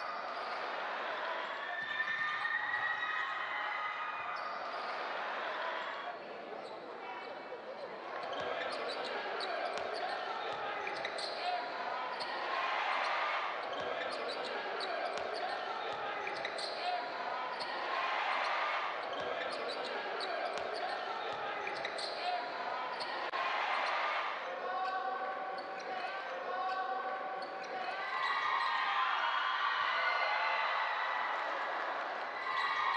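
Live basketball game audio: the ball bouncing on a hardwood court amid voices of players and spectators, echoing in a large hall.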